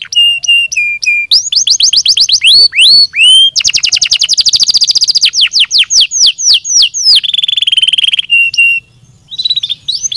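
Domestic canary singing a loud, fast song of repeated down-slurred notes and rapid trills. A very fast rolling trill comes in the middle and a lower trill near the end, and the song breaks off for a moment about nine seconds in before resuming.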